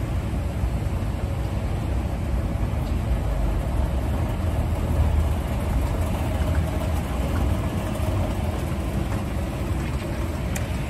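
Hitachi escalator running, a steady low mechanical rumble of its moving steps and drive, heard from on board the escalator.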